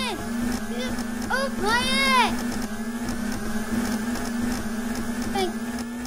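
A voice making several rising-and-falling swooping "whoo" sounds over a steady buzzing hum. Both stop abruptly at the very end.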